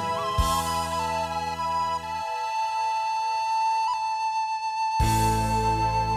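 Wooden recorder playing a slow melody that settles into one long held note, over a backing track of soft sustained chords. The backing's bass drops out about two seconds in and comes back with a low hit a second before the end.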